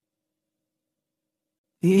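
Silence in a pause of the reading, then a woman's narrating voice starts again near the end.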